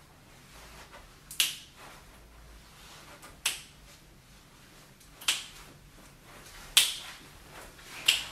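Four sharp finger snaps, spaced about one and a half to two seconds apart.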